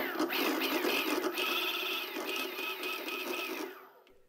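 Crazy Cart's brushless electric drive motor spinning under the foot-pedal throttle and running with a steady whine, then winding down near the end. It runs smoothly with its three hall effect sensors just replaced.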